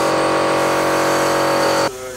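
Airbrush paint sprayer running on compressed air: a steady mechanical hum of the compressor with a hiss of spraying air, stopping abruptly near the end.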